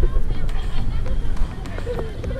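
Water sloshing and splashing against a camera held right at the surface of a swimming pool, louder for the first second and a half, with people talking and chattering around it.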